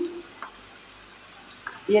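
Faint, steady sizzle of hot oil in a frying pan where sliced bitter gourd has been fried brown, with one light click about half a second in.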